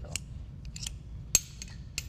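Metal pieces of a car's original tool kit, a jack handle and wrench multi-tool, clicking and clinking as they are handled and fitted together. There are a few light clicks, then one sharp ringing clink in the middle and another near the end.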